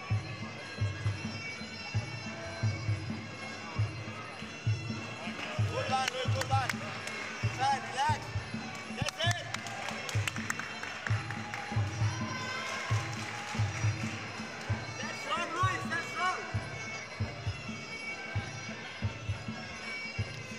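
Muay Thai fight music playing: a steady drum beat under a high wavering melody, with indistinct voices around the ring.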